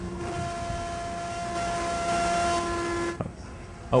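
Steady whine of a model plane's motor and propeller with wind hiss, from the aircraft's onboard flight video played back faintly over the hall's sound system. It cuts out about three seconds in and comes back much louder right at the end.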